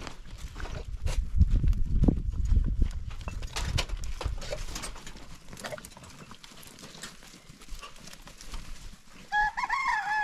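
Goats and kids shuffling and clattering over stony ground as they crowd out of a dry-stone pen, busiest in the first few seconds. Near the end, two short bleats from a young goat.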